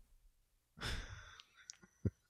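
A person breathing out close to the microphone, one sigh-like exhale about a second in, followed by a few faint mouth clicks.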